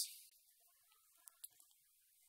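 Near silence: room tone, with a faint click a little over a second in.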